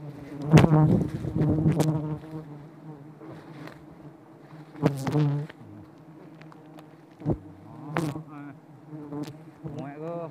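Disturbed wild honeybees buzzing, a steady, dense hum of many bees close to the microphone. A few loud knocks and rustles break in, the loudest near the start and about halfway through.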